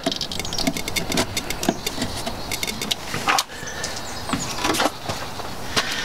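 Plastic wiring connector being worked loose and pulled off a vehicle's ignition module: a run of small clicks and rattles, with one sharper click about three seconds in.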